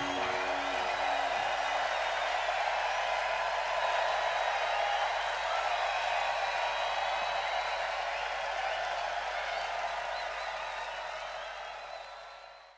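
Large crowd cheering and applauding at the end of a rock song, the band's last chord dying away in the first second. The cheering fades down near the end.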